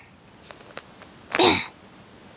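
A child's short, breathy vocal burst with a falling pitch, a bit over a second in, after a couple of faint clicks.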